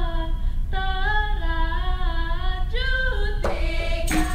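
Female singing of a dikir barat line without accompaniment: a drawn-out melody held on notes that step up and down, with a short break for breath. Near the end a sudden burst of hand-clapping breaks in as the seated group joins.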